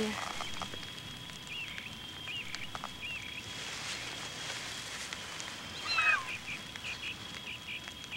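Birds chirping: a series of short, high chirps, with one louder call falling in pitch about six seconds in.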